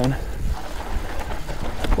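Mountain bike descending a dry dirt trail at speed: wind rumbling on the camera's microphone over the hiss of knobbly tyres on dirt, with a few knocks from the bike over bumps.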